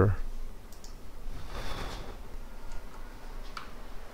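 Computer mouse button clicking three times, single sharp clicks at irregular intervals over faint room noise, as file-overwrite prompts are confirmed.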